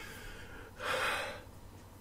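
A man's single audible breath into the microphone about a second in, between pauses of quiet room tone.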